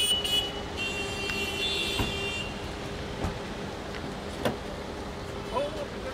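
Roadside traffic noise around a car, with a high steady beeping tone through the first two seconds or so and three sharp knocks spread through the rest.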